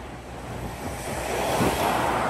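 Road traffic rushing past, swelling toward the end as a vehicle goes by close, with wind rumbling on the microphone.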